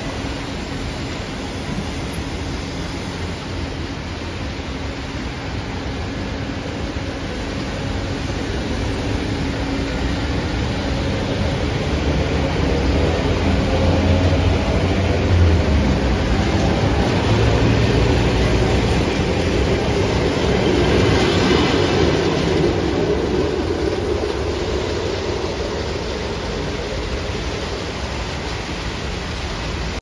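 EP3D electric multiple unit accelerating away from the platform: its traction drive whines upward in pitch over the wheels' running noise on the rails. The sound swells to its loudest midway and then eases off as the train draws away.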